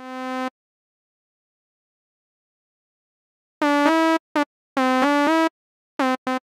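Reason's Malstrom synthesizer playing a square-wave patch meant to imitate a shehnai's edgy reed tone. A held note cuts off about half a second in. After about three seconds of silence come a few short keyboard notes that glide into their pitch with portamento.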